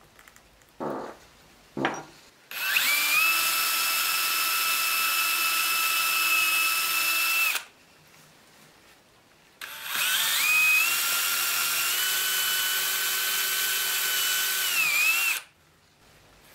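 Two brief scrapes, then a cordless drill boring into a small piece of wood in two runs of about five seconds each with a pause between. Each run opens with a rising whine as the drill spins up, holds a steady high whine, and stops abruptly.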